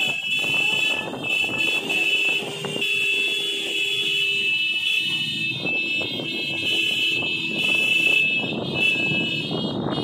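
A group of motorcycles riding slowly together in procession, engines running, under a loud, shrill high-pitched tone that holds steady almost throughout with brief breaks.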